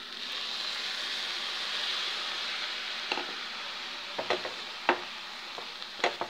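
Sweet lime juice poured into a hot pan of part-cooked basmati rice, sizzling with a steady hiss that slowly dies down. From about three seconds in, a wooden spatula scrapes and knocks against the pan as the rice is stirred.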